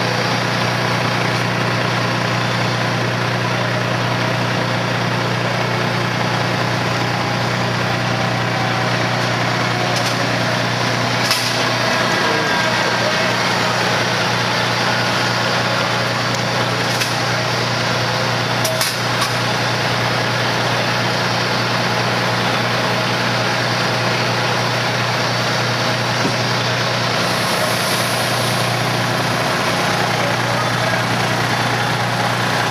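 Fire engine's diesel engine running steadily, a constant low drone under a dense wash of noise, with a few short clicks or knocks around the middle.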